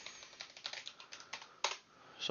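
Typing on a computer keyboard: a quick run of about ten keystrokes, one of them louder about a second and a half in.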